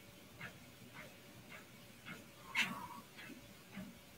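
Faint, even footfalls on the belt of a LifePro PacerMini Pro walking treadmill, about two a second, with one short breathy sound from the walker a little past halfway, who is out of breath.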